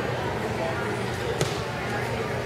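Background chatter of people talking in a large hall, with one sharp knock about a second and a half in.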